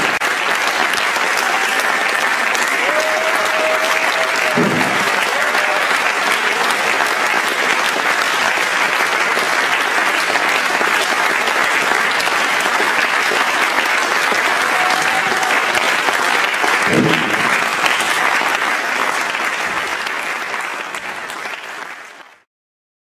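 Audience applause, steady and dense, fading out over the last few seconds.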